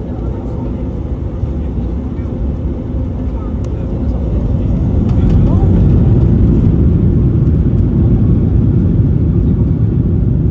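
Boeing 737 MAX 9's CFM LEAP-1B jet engines heard from inside the cabin over the wing, a deep rumble growing louder over the first half as they spool up for the takeoff roll, then holding steady.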